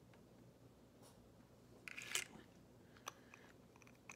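Mostly quiet room with small handling noises from nail polish swatching: a short scratchy rustle about two seconds in, then a sharp click about a second later, as the polish brush and glass bottle are handled.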